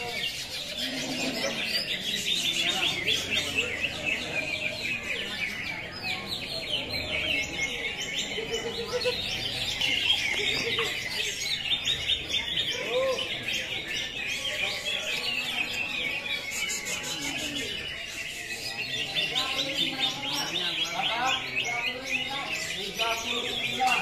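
Many caged green leafbirds (cucak hijau) singing at once: a dense, unbroken stream of fast, high chirps and trills.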